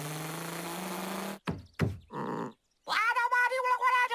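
Cartoon cat character voices: a raspy, noisy vocal sound for about the first second and a half, a couple of short cries, then from about three seconds in a long wavering vocal cry.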